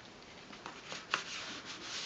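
Cardstock pages of a handmade scrapbook album being handled: paper rubbing and sliding as a flap is folded over, with a few soft ticks.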